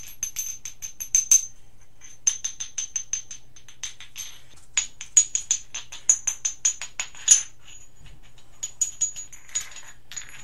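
Pieces of tektite, natural impact glass, clinked together in the hand. They ring: quick runs of sharp glassy clinks, each leaving a high, clear ringing tone, with short pauses between runs.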